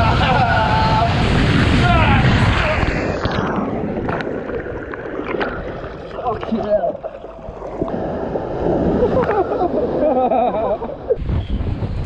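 Water rushing and splashing along a water slide, loud and close on the microphone, with a rider's wordless yells over it.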